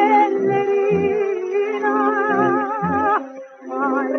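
An old song recording: a held melody with wide vibrato over a plucked low accompaniment beating about twice a second. Near the end the music drops away briefly, then comes back in.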